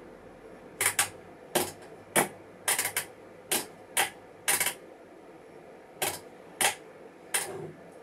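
About a dozen sharp clicks, some in quick pairs, at an uneven pace with a pause midway: front-panel buttons of a Rigol DS4014 digital oscilloscope being pressed.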